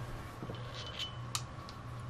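Faint handling noise from a small pocket penlight turned in the fingers, with a few light ticks, over a low steady hum.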